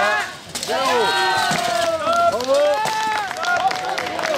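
Several voices shouting and calling over one another during an armoured fight, with light metallic clinks and knocks of steel plate armour and weapons, more of them near the end.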